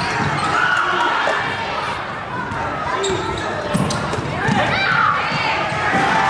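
A basketball bouncing on a hardwood gym floor during play, with sneakers squeaking and players and spectators calling out, all echoing in the gym. A few short squeaks come about four and a half to five seconds in.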